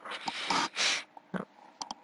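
A man breathing noisily close to the microphone between sentences: two breathy hisses in the first second, then a few faint mouth clicks near the end.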